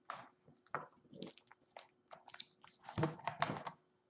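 Rustling and light knocks of a picture book being handled as a page is turned and the book is lifted. The handling is loudest about three seconds in.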